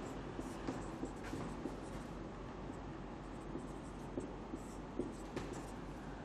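Marker pen writing on a whiteboard: faint, irregular scratching strokes and small ticks as a line of text is written.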